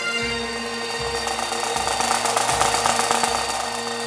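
Pipe band playing: Highland bagpipes with their drones holding one steady tone under the chanter melody, and a bass drum beating about every three-quarters of a second. A dense rattling noise swells through the middle.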